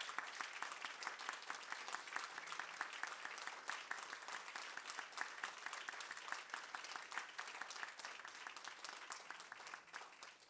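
A small group of people applauding, a steady patter of hand claps that tapers off near the end.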